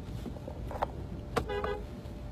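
Steady low rumble of a car cabin on the move, with a couple of sharp clicks, and a brief horn toot about one and a half seconds in.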